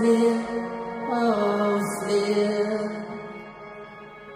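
Live pop band playing a song: long held notes that step down in pitch about a second in, the music dying away near the end.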